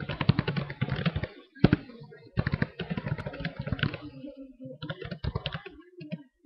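Typing on a computer keyboard: rapid keystrokes in four quick bursts with short pauses between them.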